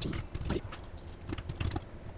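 Typing on a computer keyboard: a quick, irregular run of keystrokes as lines of code are entered.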